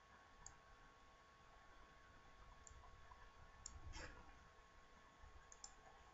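Faint computer mouse clicks, a few scattered clicks with a slightly louder one about four seconds in, over quiet room hiss.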